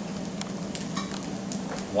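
Thin potato slices frying in rendered chorizo fat in a pan: a steady sizzle with scattered crackles.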